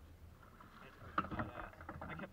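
Faint low rumble of a boat on the water, with a sharp knock a little past halfway and faint, muffled voices after it.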